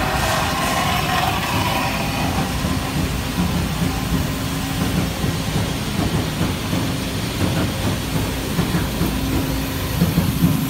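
Steady rumble and clatter of shop machinery running, with a whine that fades out over the first couple of seconds and a low hum that grows near the end.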